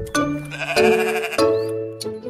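A sheep bleating once, a wavering 'baa' of about half a second near the middle, over children's song music.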